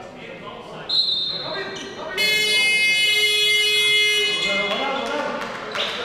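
A short, shrill whistle blast about a second in, then a loud electronic buzzer sounds for about two seconds, over the chatter of players and spectators in a sports hall.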